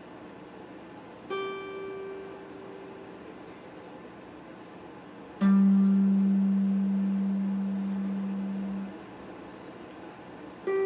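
Stratocaster-style electric guitar picked in single notes: a higher note plucked about a second in and left to fade, then a louder, lower note plucked about five seconds in that rings for three seconds before it is damped. A steady faint hiss fills the gaps between notes.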